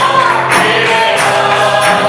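Live worship song through a PA: a man singing lead into a microphone over instrumental accompaniment with a steady beat.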